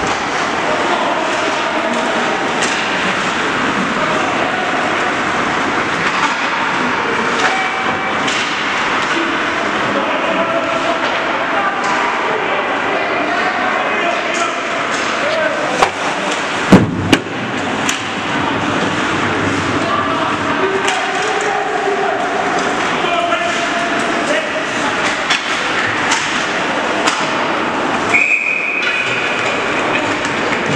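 Ice hockey game in an arena: skates scraping the ice, sticks clattering, and spectators talking throughout. A few loud sharp bangs come about halfway through, and a referee's whistle sounds for about a second near the end.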